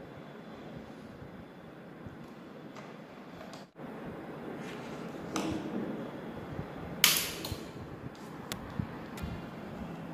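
Handling noise on a workbench: wires and parts being moved, with a few scattered clicks and one sharper, louder click about seven seconds in, over a steady background hiss.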